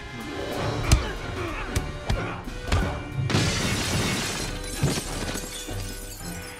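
Film fight sound effects over an orchestral score: a run of hard body impacts, the loudest about a second in, then glass shattering with shards scattering for a couple of seconds from about halfway through.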